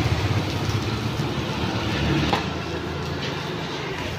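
Egg and chopped onion sizzling on a hot flat iron griddle, a steady hiss over a low rumble.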